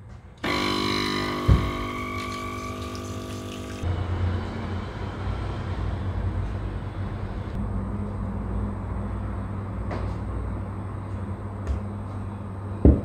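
Espresso machine's pump buzzing for about three and a half seconds as it runs a shot of coffee, with a single knock about a second after it starts. A steadier low hum follows.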